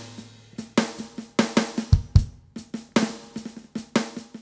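Live band's drums played in sparse hits at uneven spacing over a faintly held note, with two deeper bass-drum thumps near the middle.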